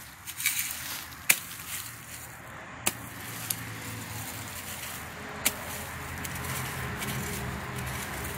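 A small hand digging tool chopping into grassy soil, giving a few sharp knocks as it strikes the ground. A low steady mechanical hum builds in the background about halfway through.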